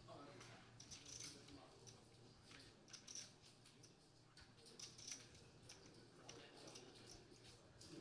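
Near silence: faint room tone with scattered soft clicks, a few a second at times.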